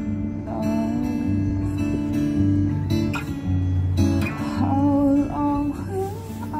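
Live acoustic guitar strummed and picked, with a woman's voice singing over it in places.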